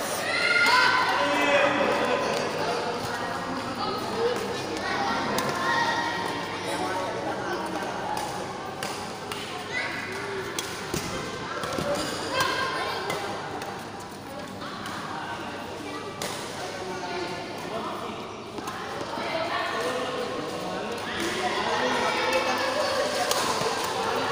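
A badminton rally: racket hits on the shuttlecock and players' footsteps on the court, scattered through the steady chatter of many voices.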